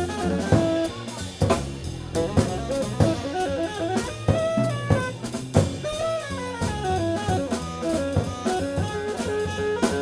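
Live jazz from a trio: a saxophone melody over walking upright bass and a drum kit, with frequent sharp drum and cymbal hits.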